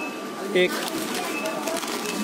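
One word spoken over the steady background murmur of a busy shop, with faint distant voices and a thin steady hum.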